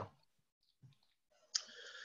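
Mostly quiet room tone, with a single faint click about a second in and a breath drawn in near the end.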